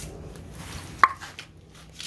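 A single sharp knock about a second in, with a short ringing tone that drops in pitch, over faint rustling.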